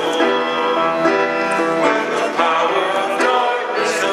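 A church choir and congregation singing a worship song together over instrumental accompaniment, with held chords that change every second or so.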